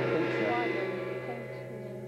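Game-show time-up signal: a sustained musical chord that starts suddenly and fades slowly over about two seconds, marking the end of the 30-second round clock.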